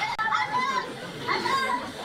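Children's voices calling out as they play, in two short bursts of high cries about a second apart.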